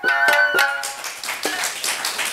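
Rakugo entrance music (debayashi): a few plucked shamisen notes that stop about a second in, followed by audience applause.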